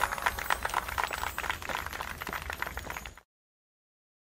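Sleigh bells rattling and jingling on as the Christmas song's other instruments fall away. The sound fades, then cuts off suddenly a little over three seconds in.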